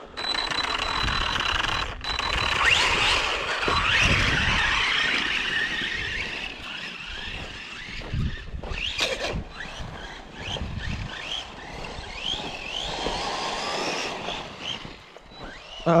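Arrma Typhon 3S RC buggy's brushless electric motor whining as it is revved up and down again and again, many short rising and falling whines, while the car drives through snow.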